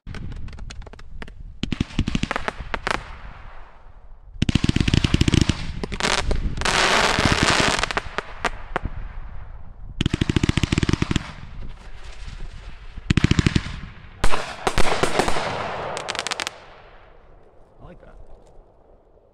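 SFX Fireworks Skyfire, a 75-shot fanned 500-gram cake, firing row by row: quick volleys of launch thumps come in several separate bursts, with a dense hissing, crackling stretch of breaks in the middle. The last volley dies away shortly before the end.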